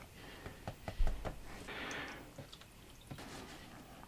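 99% isopropyl alcohol poured from a bottle into a 3D printer's resin vat, a faint splash and trickle on the FEP film lasting under a second, with a few small clicks and a soft knock about a second in.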